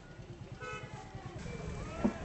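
Outdoor background hum with a low steady rumble, and a short single toot of a vehicle horn about half a second in.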